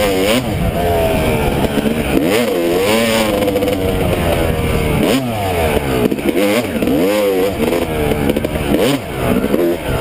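Yamaha YZ250 two-stroke dirt bike engine revving up and down repeatedly as the throttle is worked on and off along a trail, its pitch rising and falling several times.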